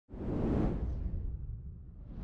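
A whoosh sound effect for a logo animation: it swells up just after the start, peaks about half a second in and fades over the next second, over a low rumble.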